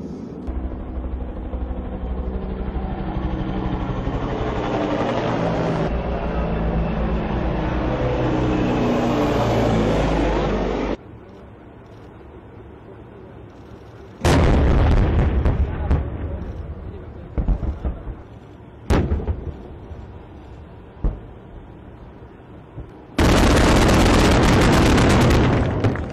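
Heavy vehicle engine noise builds for about ten seconds and then cuts off sharply. About fourteen seconds in a single very loud gun or artillery shot rings away, followed by a few smaller sharp bangs, and near the end comes a loud, sustained blast lasting about three seconds.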